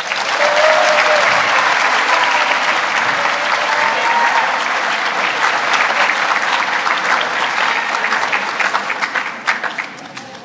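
Audience applauding steadily, thinning out near the end.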